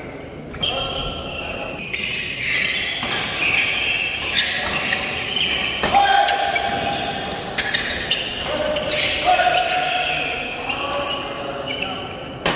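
Badminton doubles rally in a large hall: rackets striking the shuttlecock in quick irregular hits, with crowd voices and calls throughout and a reverberant echo.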